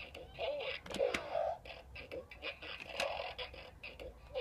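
A Bop It Extreme 2 toy plays its beat music and game sounds through its small speaker, thin and with little bass, on a nearly flat battery. Sharp clicks come throughout.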